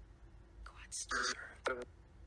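Two or three clipped, whispery voice fragments from a PSB7 spirit box scanning radio stations, about halfway through, heard as a one-word reply, 'Quadster', to a question.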